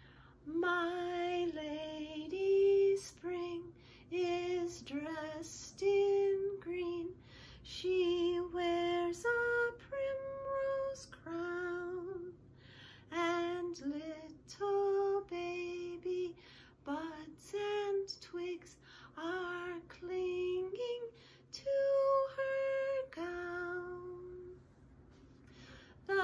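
A woman singing a slow, stately springtime children's song unaccompanied, one voice held on note after note in phrases.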